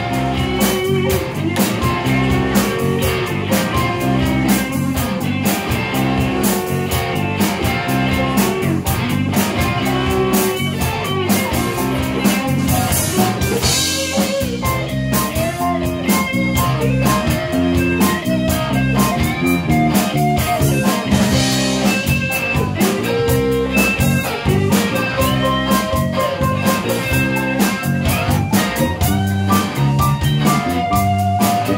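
Live band playing a blues-rock instrumental section: electric guitars over bass, keyboard and drum kit, with bending guitar lines above a steady beat.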